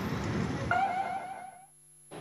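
Road traffic noise, joined about two-thirds of a second in by a brief wavering tone lasting under a second, then fading out.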